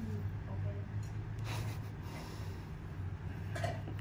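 A low, steady hum, with a faint, short breath about a second and a half in.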